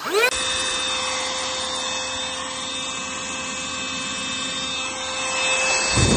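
Handheld cordless vacuum cleaner switched on: its motor spins up within a fraction of a second to a steady high whine over rushing air. The sound grows louder near the end.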